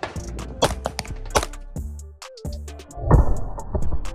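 Shots from a 9mm Glock 19X fitted with a Radian Ramjet barrel and Afterburner compensator, fired one after another at an uneven pace of roughly one every half second to second, over background music. The loudest comes about three seconds in.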